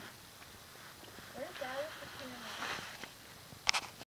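Voices of people talking at a distance, faint and unclear, for about a second and a half in the middle. Near the end there is a short, sharp scuffing noise.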